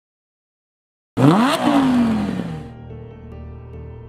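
Silence for about a second, then a car engine revs once, loudly, its pitch rising sharply and then falling away over about a second and a half. As it fades, a low sustained music drone takes over.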